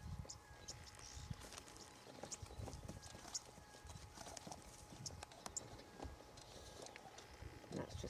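Two young male waterbuck sparring: faint, irregular clicks and clacks of their horns knocking together, with hooves scuffing on dry ground.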